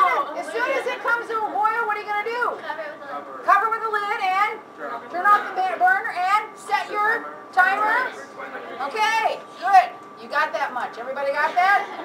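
Speech: a woman talking to a class, with some chatter from students; no other sound stands out.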